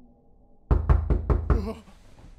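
Knocking on a door: a quick run of about five loud knocks starting near the middle, each ringing briefly, then dying away.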